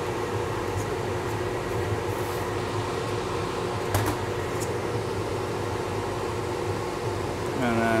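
Steady hum of a ventilation fan running, with a few fixed tones in it. A single sharp click about four seconds in.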